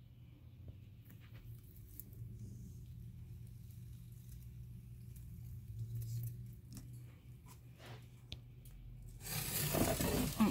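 Faint handling noise, a few scattered light clicks, over a steady low hum. About a second before the end, a much louder rustling scrape starts as the phone is moved along the glass enclosure.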